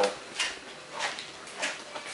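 Three light knocks or clinks about half a second apart, over low shop background noise.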